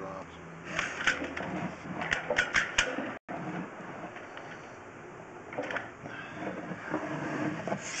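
Handling noise from a sewer push-camera rig as the camera is moved through the pipe: rubbing with a cluster of sharp clicks and knocks in the first three seconds, then quieter scattered rubbing.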